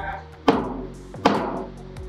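A stainless steel milk jug of freshly steamed milk is tapped twice on a wooden counter, two sharp knocks with a brief ring, to groom the milk and settle its bubbles. Background music plays underneath.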